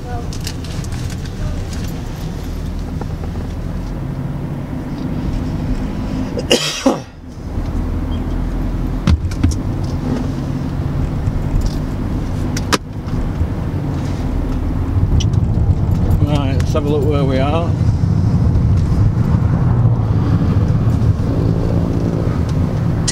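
Steady road and engine noise heard inside a moving car's cabin. A brief loud noise comes about seven seconds in, and a single sharp click comes near thirteen seconds.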